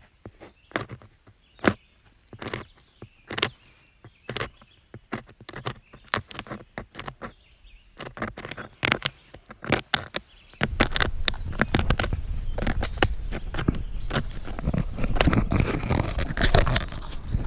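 Pine sawyer beetle larva chewing the wood under the bark of a cut pine log: loud, irregular crunching clicks a few times a second. About two-thirds of the way in, louder, denser rustling and scraping close to the microphone takes over.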